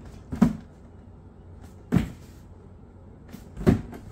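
Large cardboard helmet box handled and turned in the hands, giving three dull thumps, roughly one every one and a half seconds.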